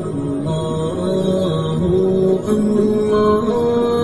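Background devotional chant: a voice holding long, sustained notes that step from pitch to pitch, with no distinct words.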